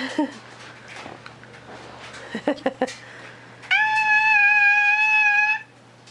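A young child's long, high-pitched, steady squeal held for about two seconds in the second half, after a few short vocal sounds.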